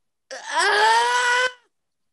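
A person's long drawn-out cry of "aah", rising in pitch at first and then held steady for a little over a second before cutting off.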